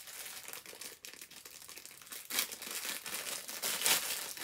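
Clear plastic packaging crinkling as it is handled and torn open by hand, with louder crinkling bursts about two and a half seconds in and again near the end.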